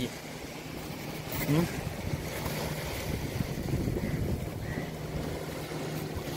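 Seashore ambience: wind and surf noise with a faint, steady low hum, and a brief voice sound about one and a half seconds in.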